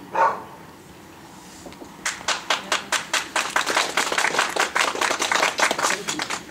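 A dog barks once; about two seconds later spectators start applauding, and the clapping runs on past the end.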